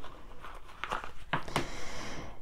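A deck of oracle cards being handled: a few short, separate rustles and clicks as the cards are picked up and worked through the hands.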